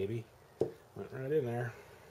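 A man's voice, two short wordless vocal sounds, the second longer and wavering in pitch about a second in, with a single sharp click between them.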